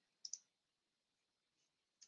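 Near silence with two faint computer mouse clicks in quick succession, about a quarter second in.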